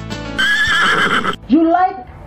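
A horse whinny with a wavering high pitch, lasting about a second, followed by a short rising call, over steady background music.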